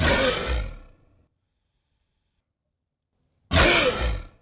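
Two dry human coughs played back slowed down, their speed lowered by 60 percent, so each comes out as a deep, growling, roar-like sound about a second long. One comes at the very start, the second about three and a half seconds in.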